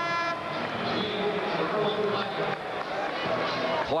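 Arena horn at the scorer's table, a steady held tone that cuts off about a third of a second in, signalling a substitution. After it comes the steady noise of the arena crowd.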